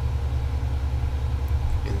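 Steady low hum with faint hiss underneath, and no other sound.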